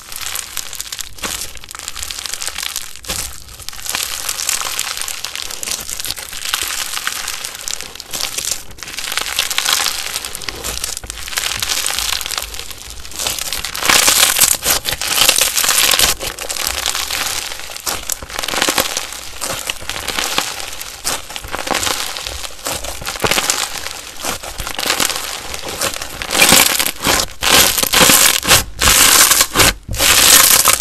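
Hands squeezing and kneading slime close to the microphone: a dense, continuous run of small crackles and pops. The first half is a foam-bead slime; after the middle it is a soft yellow slime, and the sound gets louder.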